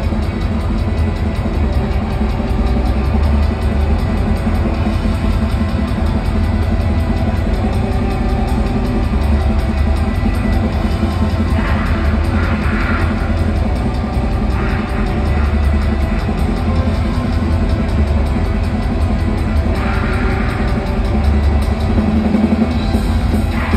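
Live rock band playing loud, with electric guitars and fast drumming with cymbals, heard from far back in the audience through a phone microphone.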